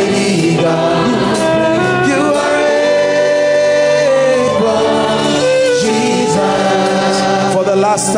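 A gospel worship song being sung, with long held, wavering notes.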